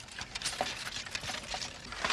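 Metal ramrods scraping and clinking in the barrels of several flintlock muskets as a rank of soldiers rams down their cartridges, a faint, irregular clatter.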